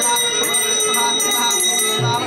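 Small brass hand bell (ghanta) rung continuously, a steady high ringing, with men chanting underneath.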